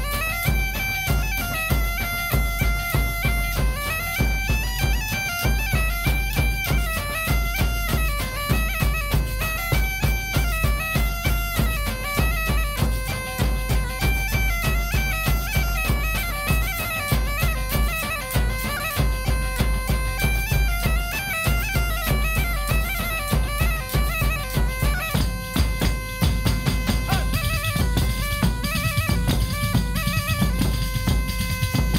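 A gaita (bagpipe) playing a lively folk melody over a steady beat of hand-struck frame drums (panderetas and a square pandero) and a large bass drum.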